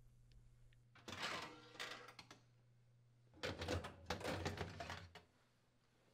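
Wire oven racks being slid out of a wall oven's cavity: two stretches of metal rattling and sliding, the first about a second in and the second from about three and a half seconds in.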